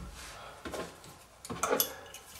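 Faint metal clinks and handling sounds, the clearest a little past halfway, as the compression nut of a new shutoff valve is screwed on by hand and pliers are taken up.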